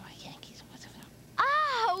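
A man whispering softly. About one and a half seconds in, a young girl's loud, high-pitched exclamation of delight ('oui') cuts in, sliding up and down in pitch.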